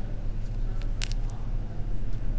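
A steady low hum with a few brief, soft clicks and rustles about halfway through, from fingers handling a hen back skin and pulling a feather from it.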